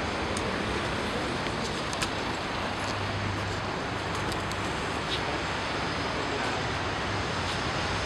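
Steady street traffic noise, with a low vehicle hum swelling about three seconds in and a few faint clicks.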